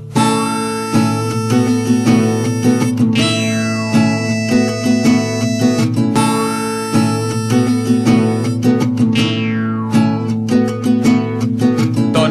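Instrumental break of a folk-rock song: a band playing with strummed acoustic guitar over a steady bass line and sustained lead notes, with no vocals. A descending run of high notes comes about three-quarters of the way through.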